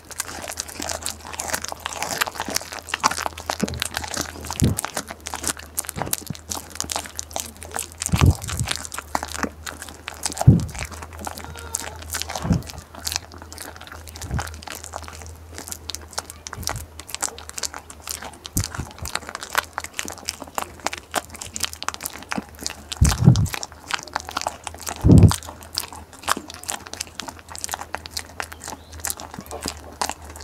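A goat biting and chewing ripe jackfruit flesh: steady close-up crunching and wet munching, with a handful of louder low thumps scattered through.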